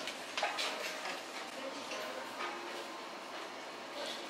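Shop room tone: a steady background hiss with faint distant voices and a few light clicks of small bottles being handled.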